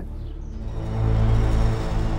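Dark, ominous documentary underscore: a low sustained drone that swells in loudness about halfway through.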